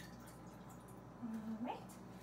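Faint trickle and drips of water poured from a measuring cup into a saucepan, followed about a second in by a short hum from a woman's voice.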